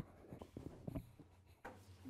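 Very quiet room tone with a sharp click at the start and a few faint ticks and rustles in the first second.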